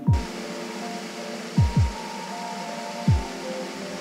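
Background music: held synth chords with deep bass-drum hits that drop in pitch, the hits coming singly and in a quick pair. A steady rushing hiss runs underneath.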